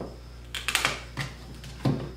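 Metal drill bits clicking against a plastic drill-bit case as one is picked out: a handful of light, irregular clicks and taps.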